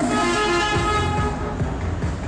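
Bus horn sounding one steady blast for about a second and a half, with the coach's engine running underneath.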